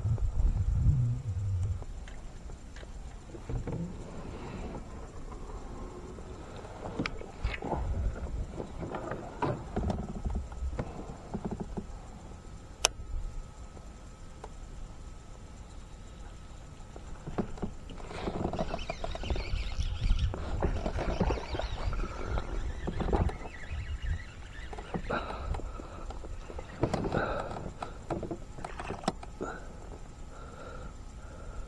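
Handling noise from a kayak angler's baitcasting rod and gear: scattered clicks and knocks, with longer rustling stretches about two-thirds of the way in and near the end.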